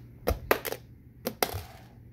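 Small fingerboard clattering on a hard wood-look floor as it is flicked into flips and lands: a quick run of three sharp clicks early on, then two more just past halfway.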